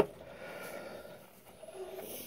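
A single sharp click as the garage door spring of a homemade iron-pipe grip trainer is shifted on its handle, followed by quiet handling noise.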